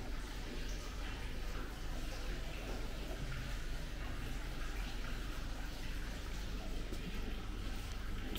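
Steady low electrical hum with an even hiss, no distinct sounds standing out.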